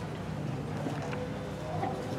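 Low, steady hall ambience: a rumbling background noise with a faint steady hum that comes in about halfway through, and no recitation or speech.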